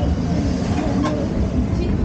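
Steady low rumbling background noise, with faint voices in the background.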